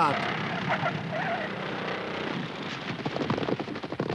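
Cartoon biplane landing: a short falling whistle, then a noisy rumble as the aircraft runs along the grass. The rumble turns into a rapid sputtering clatter over the last second or so, with faint shouts behind it.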